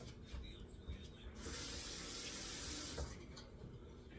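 Kitchen tap running into a sink for under two seconds, starting about a second and a half in and shutting off abruptly, with a few light knocks around it.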